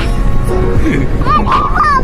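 A young child's high-pitched playful squeals in the second half, over the steady rumble of a moving car's cabin and background music.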